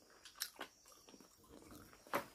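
Faint eating sounds, chewing with two short clicks about half a second in, over near silence.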